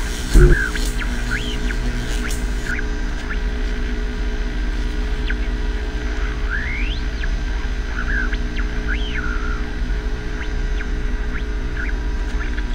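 Dark ambient horror score: a steady low drone with short rising whistle-like glides every few seconds, and a heavy low thud about half a second in.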